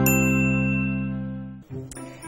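Short musical jingle of a TV programme's logo ident: a held, ringing chord that fades away and ends about a second and a half in.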